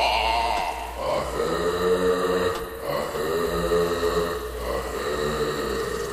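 Low vocal chanting in three long held notes, with a wavering higher tone at the very start, over a steady low hum.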